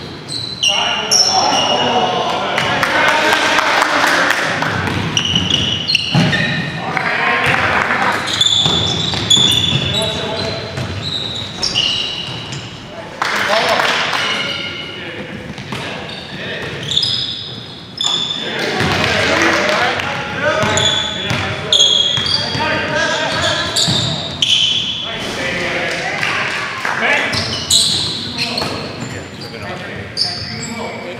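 Basketball game on a hardwood gym floor: the ball bouncing as players dribble, many short high-pitched sneaker squeaks, and indistinct players' voices, all in a large gym.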